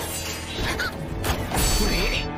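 Anime soundtrack: dramatic background music over a low rumble, with several sudden crashing sound effects, the loudest near the end, and a girl's short gasp about a second in.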